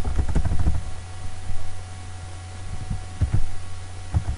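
Keys tapped on a laptop keyboard in short bursts: a quick run at the start, a few taps about a second and a half in and another run near the end. Under it runs a steady low electrical hum.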